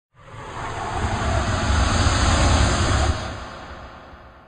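An intro whoosh sound effect: a rushing noise swell that builds for about two and a half seconds, then fades away.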